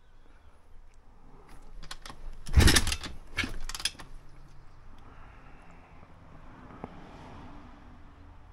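Kick-start attempt on a YCF pit bike's 170 cc single-cylinder engine: about two and a half seconds in, a loud half-second burst as the kick turns the engine over, then two shorter clatters, and the engine does not catch. The engine is hard to start when cold.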